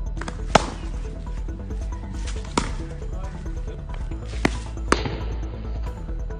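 Sharp cracks of a cricket bat striking a ball, four in all: the loudest about half a second in, another about two and a half seconds in, and two close together near the end. Background music plays under them throughout.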